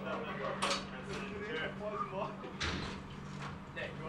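Indistinct talk in the background over a steady low hum, with two short bursts of hiss, one early and one past the middle.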